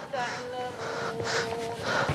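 Several breathy gasps from a person, over a man's voice chanting Quran recitation that holds one long note partway through.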